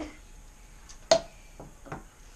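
Handling sounds from small objects: one sharp click about a second in, with a fainter click just before it and another near the end.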